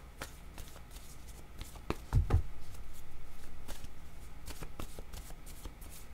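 A deck of oracle cards being shuffled by hand: a run of short card clicks and slides, with a low thump about two seconds in and a denser stretch of shuffling after it.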